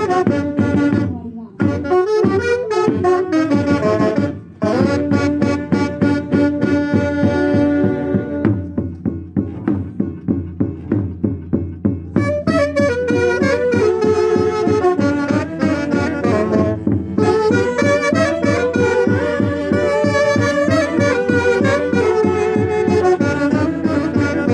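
Two saxophones playing a santiago, the festive Andean dance music of central Peru, in harmony over a steady beat. Near the middle the melody drops out for a few seconds, leaving the lower accompaniment and beat.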